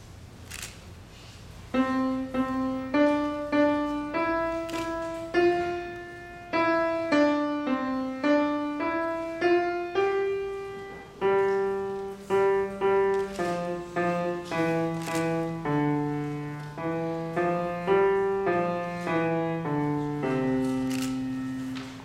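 Grand piano played solo: a simple melody of single notes begins about two seconds in, and a lower accompanying line joins about halfway through. The piece ends on a held note that fades out near the end.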